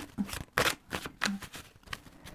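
A deck of divination cards being shuffled by hand: a string of short, irregular papery slaps and riffles.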